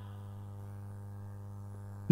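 Faint, steady low drone: a hum near 100 Hz with a ladder of even overtones, holding level without change.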